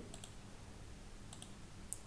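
A few faint computer mouse clicks, the clearest just before the end.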